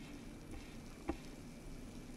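Faint, even sizzle from a steaming pot of vegetables being water-sautéed, with one short knock about a second in as cauliflower florets drop into the pot.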